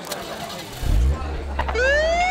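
Liquid pouring and fizzing into a glass mug. About a second in a deep low rumble starts, and near the end a police siren begins to wind up, rising in pitch.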